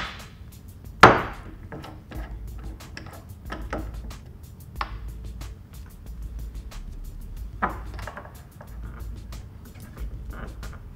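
Glass bottles and lab glassware handled and set down on a bench: one sharp knock about a second in, then a few lighter clicks, over quiet background music.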